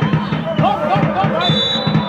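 A steady drumbeat with voices over it, and a steady high whistle tone that starts about halfway in.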